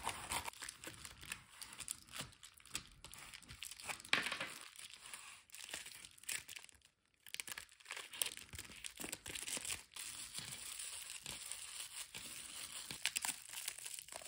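Bubble wrap crinkling and crackling irregularly as it is cut and folded by hand around small crystal pieces, with a brief drop to silence about halfway through.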